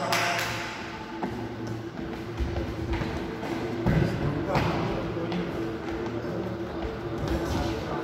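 Voices echoing in a large indoor badminton hall, with several sharp knocks and thuds; the loudest thud comes about four seconds in. A steady low hum runs underneath.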